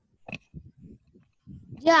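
Speech only: faint murmuring with a short click, then a child's drawn-out "yes" with a falling pitch near the end, heard over a video call.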